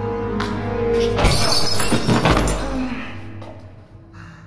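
Glass shattering about a second in, a loud crash with a spray of breaking fragments lasting about a second, over a film score of held low tones that fades near the end.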